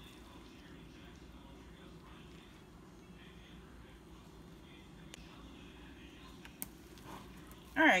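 Faint, soft squishing of a hand kneading wet salmon croquette mixture in a plastic bowl, over low, steady room noise, with a single short click near the end.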